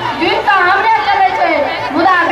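Speech only: an actor speaking dialogue into a handheld microphone, heard through the stage sound system.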